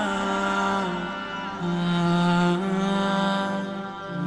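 Opening theme music: a chanting voice holding long notes that step from one pitch to the next.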